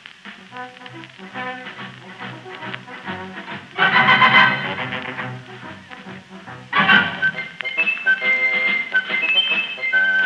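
Studio orchestra playing a medley of First World War songs, heard through an old radio-broadcast recording with no high treble. It opens softly, swells to a full, loud passage about four seconds in, eases back, and swells again a little before seven seconds.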